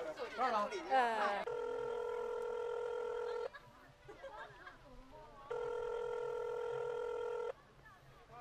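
Mobile phone call tone: a steady electronic tone held about two seconds, sounding twice with a two-second gap between.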